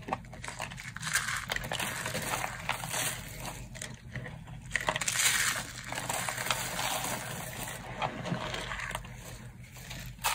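Dry, brittle soap curls and shavings crushed and crumbled by hand, a continuous crunchy crackle with a few louder bursts.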